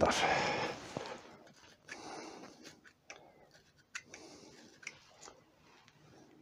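Faint handling sounds of small pen parts and sandpaper: a few light clicks and a short soft scrape about two seconds in, as the antler pen parts are handled and their ends readied for a flat twist on 240-grit paper to clear a CA glue ridge.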